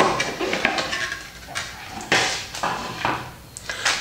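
Cardboard packaging and a plastic-wrapped bundle of cables being handled: irregular rustling and light knocks, with a longer rustle about two seconds in.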